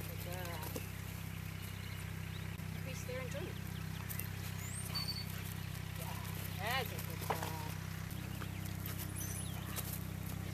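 Outdoor field ambience: a steady low hum, a few short high bird chirps, and brief snatches of a woman's voice a few seconds in and again near the end.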